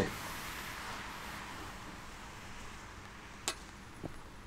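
Faint outdoor ambience, a steady hiss that slowly fades, with one short sharp knock about three and a half seconds in.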